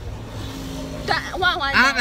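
Low, steady engine and road rumble inside a moving car's cabin, then a person's voice comes in about a second in.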